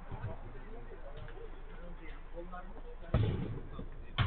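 Indistinct calls and shouts of players on a five-a-side football pitch, with a single sudden thump about three seconds in.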